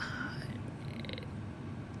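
Pause in a woman's speech: steady low background hiss of the recording, with a brief faint rapid pulsing sound about a second in.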